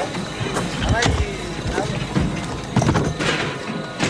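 Several voices calling out in short bursts, amid scattered knocks and clatter, with music underneath.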